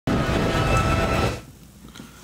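Short TV news intro sting for the weather segment's logo: a dense swell with a few held tones that cuts in at once and dies away after about a second and a half.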